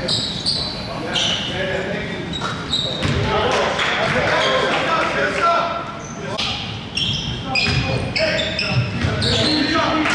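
Basketball dribbled on a hardwood gym floor during play, with many short, high sneaker squeaks as players cut and stop, all echoing in the large hall.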